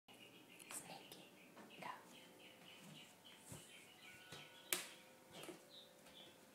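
Faint whispering in a quiet room, with a sharp click about three-quarters of the way through.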